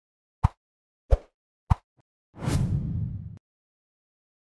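Logo intro sound effects: three short thumps about half a second apart, then a whoosh with a low rumble lasting about a second that cuts off suddenly.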